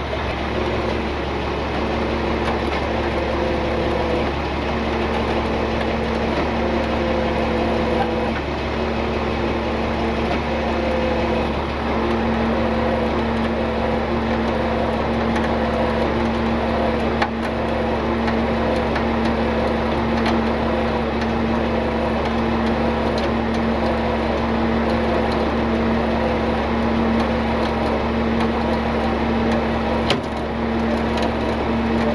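Tow truck engine running steadily while it drives a winch pulling a stuck box truck out of a ditch, a constant mechanical drone with a held tone.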